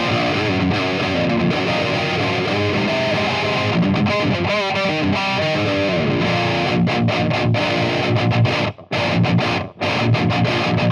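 Heavily distorted eight-string electric guitar playing a metal riff through a Line 6 Helix's Mesa Boogie Dual Rectifier amp model, heard from a guitar speaker cabinet. Sustained notes and chords waver in pitch around the middle. Near the end come stop-start chugs with two brief silences.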